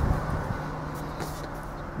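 Steady low hum and hiss inside a car's cabin, with a faint click about a second in.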